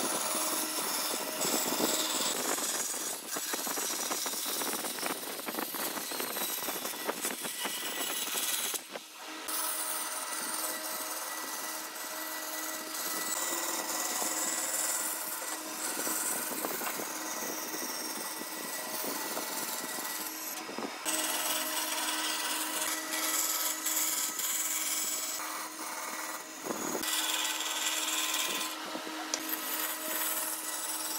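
Band saw running and cutting curves through a thick wooden board: a steady machine hum under the rasp of the blade in the wood, broken by a few very short dropouts.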